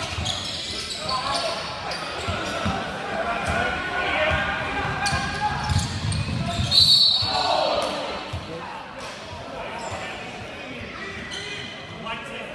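Basketball game in a sports hall: the ball bouncing on the wooden court amid players' and spectators' voices, with a short high referee's whistle about seven seconds in.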